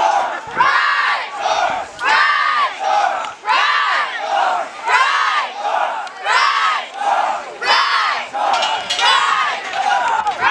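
A group of young men shouting a chant in unison, one loud call about every second.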